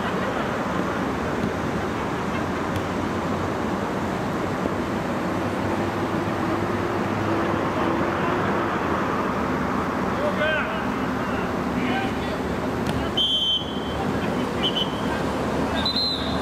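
Outdoor mini-football match ambience: a steady noisy hiss with distant shouts from players and spectators. Short high whistle tones sound about thirteen seconds in and again shortly after.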